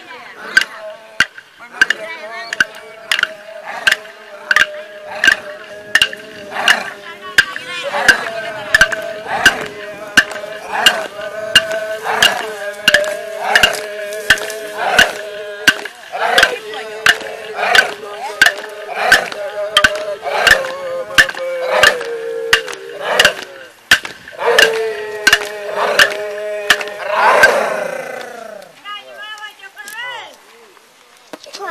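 Ceremonial song: clapsticks struck in a steady beat, a little under two strokes a second, under men's voices chanting on long held notes. Near the end the voices slide down in pitch, and the singing and sticks stop.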